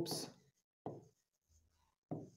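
Faint sounds of a pen writing on the glass screen of an interactive display, with a short stroke sound about a second in. The end of a spoken word comes first.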